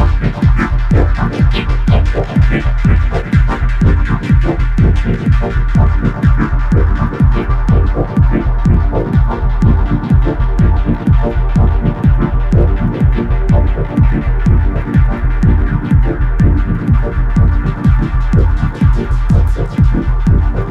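Electronic music: a techno track with a fast, steady beat over deep bass and held droning tones.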